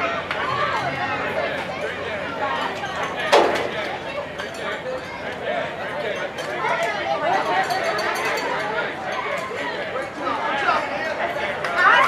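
Many voices chattering at once, an indistinct babble of talk, with one sudden loud sound about three seconds in.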